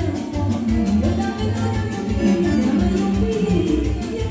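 Amplified live band playing upbeat folk dance music with a steady beat, an instrumental stretch without singing.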